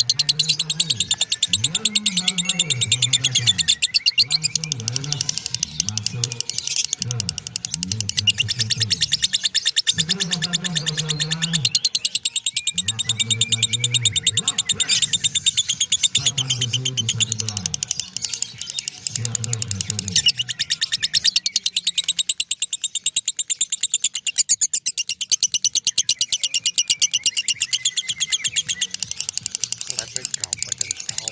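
Masked lovebird chattering in one long unbroken 'ngekek': a fast, high-pitched rattling trill that runs on without a pause. Underneath it there is a lower-pitched background sound that fades in the last third.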